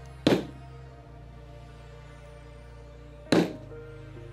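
Two sharp strikes of a mallet on a leather stamping tool set against veg-tan leather, about three seconds apart, over steady background music.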